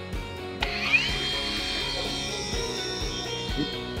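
A cordless dual-action polisher starts up about half a second in: its motor whine rises quickly, then runs steadily as the foam pad spins and oscillates on the panel, buffing in a ceramic detail spray. Background music plays underneath.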